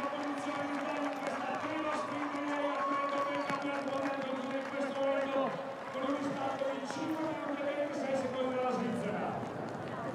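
A man's voice talking, drawn out in long held sounds, over light outdoor background noise.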